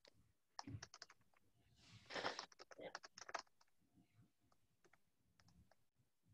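Faint computer keyboard typing and clicking: a quick, irregular run of keystrokes, busiest in the first half, thinning out to a few scattered clicks.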